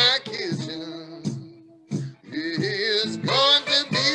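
Solo acoustic blues on an archtop hollow-body guitar, with a man singing over it in wavering, bending lines. There is a brief pause about two seconds in before the playing and voice come back louder.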